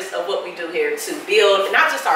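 Women's voices talking in a lively way, pitched high.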